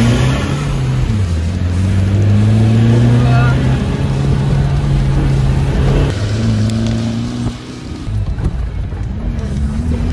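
Land Rover Defender engine heard from inside the cab, revving hard under acceleration and rising in pitch, then holding. About six seconds in it falls and briefly eases off, then picks up and climbs again.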